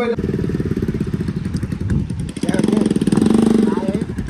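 Motorcycle engine running close by, its firing a rapid, steady pulse, growing louder for about a second past the middle.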